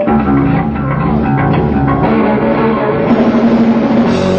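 Live heavy metal band playing: electric guitar and bass guitar with drums, the song getting under way right after some talk.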